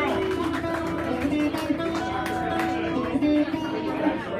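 Live music: strummed guitar with a singer holding one long, steady note through most of the stretch.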